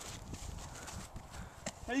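Running footsteps on grass, heard as a quick uneven series of low thuds close to the microphone, with a short click near the end.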